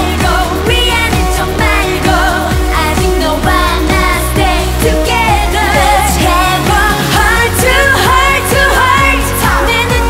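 Female vocals singing a K-pop song into microphones over a pop backing track with a steady beat and bass line.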